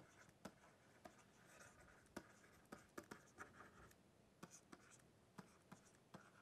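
Very faint stylus on a tablet's writing surface: irregular small taps and light scratching as a word is handwritten.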